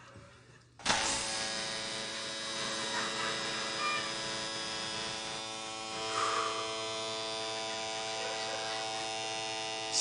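Electric tattoo machine switching on abruptly about a second in, then buzzing steadily as it works on the skin.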